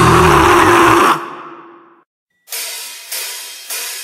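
Grindcore band playing at full tilt, stopping abruptly about a second in and ringing away to a short silence. Then three evenly spaced cymbal taps, a little over half a second apart, count in the next song.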